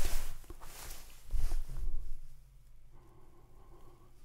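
Quiet room tone with a faint steady low hum and a couple of soft brief noises in the first two seconds.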